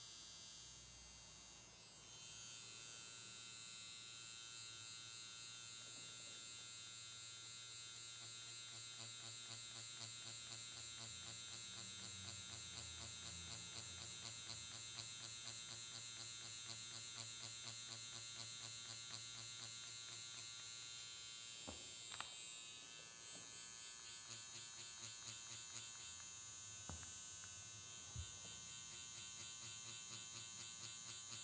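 Quantum One permanent-makeup machine with a 1R 0.25 cartridge needle, running with a steady high-pitched buzz as it shades practice squares on latex skin. From about eight seconds in the buzz pulses evenly a few times a second, and near the end there are a few faint knocks.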